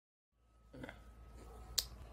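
Dead silence that gives way to faint background hum, then a single sharp click near the end as a hand moves close to the microphone.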